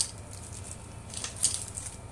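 Hands rustling and brushing a soft cloth drawstring pouch. There is a brief sharp tick at the start and a louder rustle about a second and a half in.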